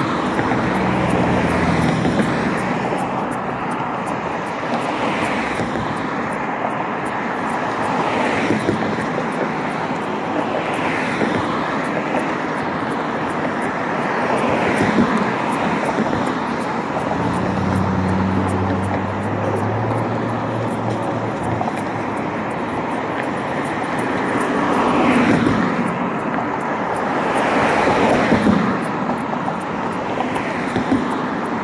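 Street traffic: cars passing one after another, each rising and fading, over a steady road noise, with the loudest passes near the end. A low engine hum comes and goes twice, early and again past the middle.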